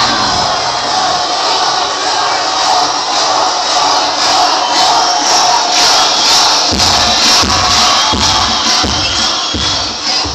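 A group of children shouting and cheering over loud pop music. Low thuds come about twice a second in the last few seconds.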